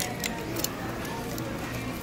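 Plastic clothes hangers clicking a few times against a metal garment rack as the clothes are pushed along it, over a background of voices.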